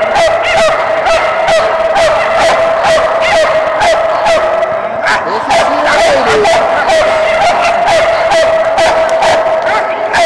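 Dogs barking and yipping excitedly in rapid, nonstop succession in a large echoing hall, as dogs are held at the start line of a flyball race. A steady high tone runs underneath.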